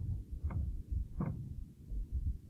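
Low muffled thudding and rumble, with two brief faint knocks about half a second and a second and a quarter in.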